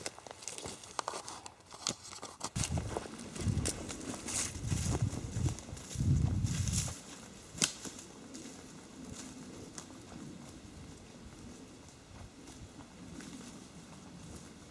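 Close rustling and heavy thuds for the first several seconds, then faint footsteps crunching through dry leaf litter and undergrowth, growing fainter as the walker moves away.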